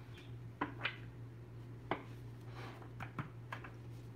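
A deck of oracle cards being shuffled and handled: several short, soft snaps of the cards spread through, over a steady low hum.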